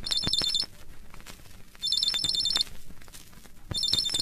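Telephone ringing on a vinyl record: three trilling rings, each under a second long, about two seconds apart, with faint surface clicks from the record between them.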